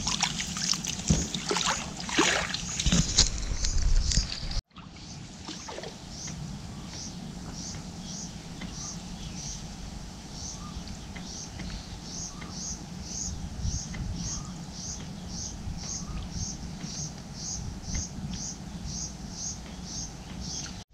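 Muddy pond water sloshing and splashing as hands grope through the shallows for eels, for about four and a half seconds. It cuts off suddenly, leaving a quieter steady outdoor background with a regular high chirp about twice a second.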